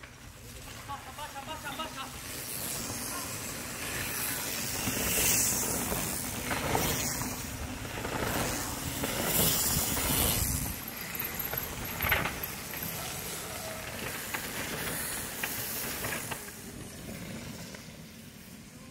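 Mountain bikes riding past on a dry dirt trail, their tyres hissing and crunching over gravel and dust in several swells as riders go by.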